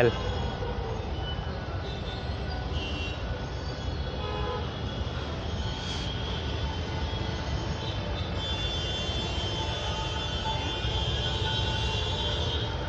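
Steady outdoor background noise of distant road traffic, a low even hum, with a faint high steady tone joining in during the second half.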